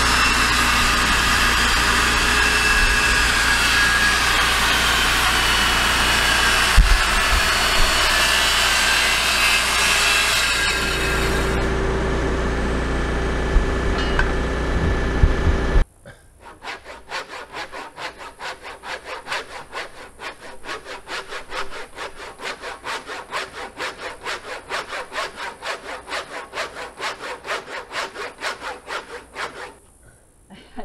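Corded circular saw running loud and steady as it cuts through a thick sawmilled timber. About sixteen seconds in it stops abruptly, and a hand saw takes over, working back and forth through the wood in a steady rhythm of strokes.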